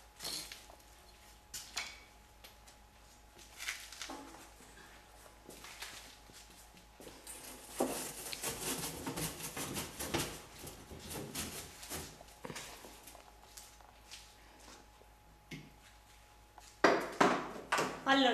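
Scattered knocks and scraping of bread and tools being handled inside a wood-fired brick oven, busier in the middle and with a few louder knocks near the end.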